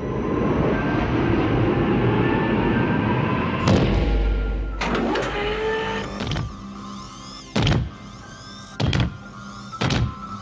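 Film sound effects of a power-loader exosuit: a long rushing hiss with rising tones, a heavy low thud about four seconds in, then electric servo whines and heavy metal footsteps about every 1.3 seconds. Music plays underneath.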